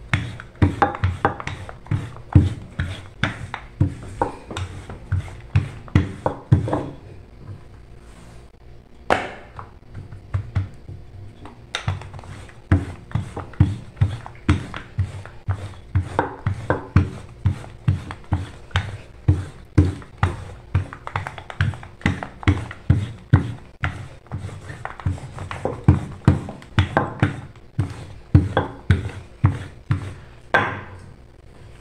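Wooden rolling pin rolling out bread dough on a stone countertop, knocking on the stone with each back-and-forth stroke, about two strokes a second. The strokes pause for a few seconds near the middle.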